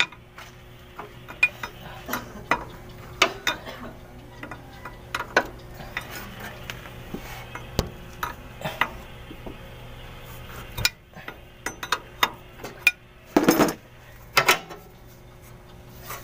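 Combination wrench clinking and scraping against the metal hose fitting on a truck's air dryer as the fitting is loosened. Scattered light metallic clicks, with two louder clanks about three-quarters of the way in.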